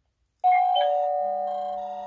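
Silvercrest Wi-Fi video doorbell's plug-in base unit chiming after the doorbell button is pressed: a high note, then lower notes, ringing on and slowly fading.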